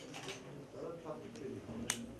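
Indistinct low voices of several people in a small room, with one sharp click near the end.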